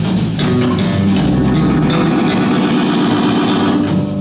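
Live punk rock band playing, with distorted electric guitar, bass and drums. The drum hits thin out after about a second while the guitars keep sounding.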